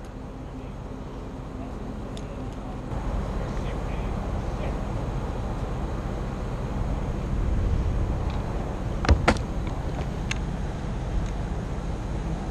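Steady low rumble of an aerial-lift truck's engine running, getting louder about three seconds in, with two sharp knocks close together about nine seconds in.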